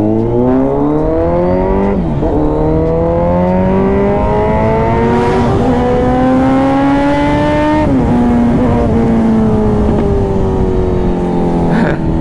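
Motorcycle engine, heard from the rider's seat, pulling hard through the gears. Its pitch climbs steadily and drops sharply at an upshift about two seconds in and again near eight seconds, then eases slightly lower.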